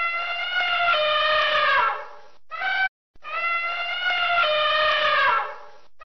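Elephant trumpeting twice. Each call is a long, brassy trumpet that falls slightly in pitch over about two and a half seconds, and a short blast comes between the two.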